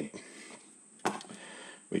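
A pause in talk with faint room noise, broken about a second in by a single sharp click: a pen being picked up off a spiral notebook. A woman's voice starts again at the very end.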